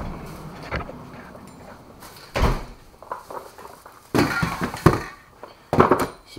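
A handful of knocks and thumps with rustling between them, the loudest about two and a half seconds in and a cluster of clatters past the four-second mark: things being handled and moved around.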